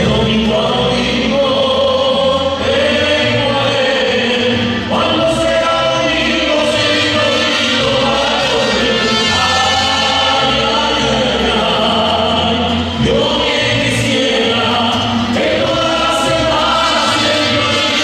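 Mariachi group singing together in chorus, accompanied by strummed guitars with a steady bass line.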